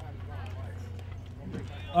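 Faint talking between songs over a low steady hum from the stage rig; no music is playing.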